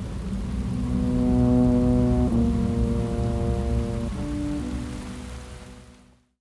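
Background score of long held chords that shift twice, over a steady low rumble like rain, all fading out near the end.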